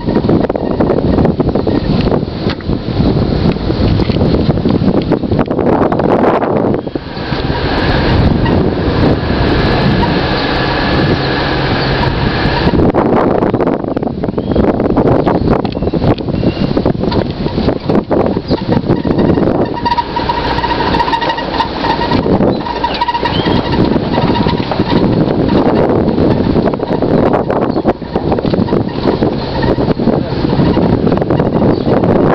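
Strong wind buffeting the microphone: a loud, gusty rumbling rush, with a few faint high tones now and then.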